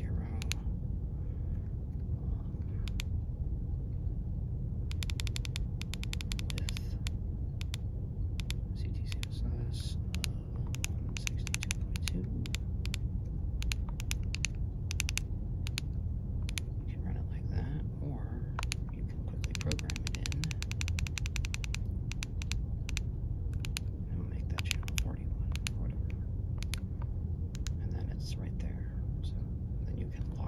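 Keypad buttons of a Baofeng UV-5R handheld radio pressed in quick runs of clicks, entering frequencies and menu settings by hand, over a steady low hum. The densest run of presses comes about two-thirds of the way in.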